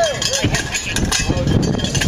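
People shouting "yeah" in rising-and-falling calls that trail off about half a second in, over steady outdoor rumble.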